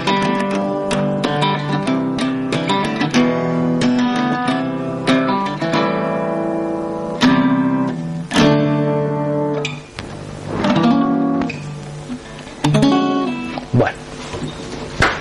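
Acoustic guitar played without singing: a run of plucked and strummed chords, easing briefly about ten seconds in and stopping near the end.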